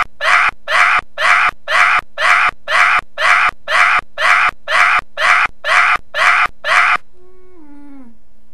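A harsh, screech-like cry cut into an identical repeating loop, about two a second, some fifteen times over a steady low hum. Near the end a short pitched tone steps down in pitch.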